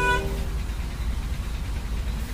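Steady low rumble of a city bus heard from inside the cabin, engine and road noise while riding. A few held musical notes cut off just after the start.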